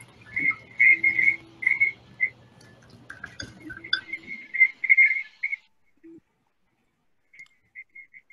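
Short high whistle-like tones over a video call's audio, repeated irregularly for about five seconds. They stop, and a few faint ones return near the end.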